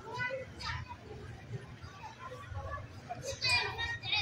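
Voices of an outdoor crowd: adults and children talking and calling out at scattered moments, with one voice louder near the end.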